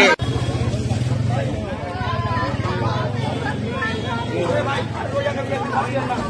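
Many people talking over one another, with a vehicle engine idling underneath as a steady low rumble, strongest in the first second or so.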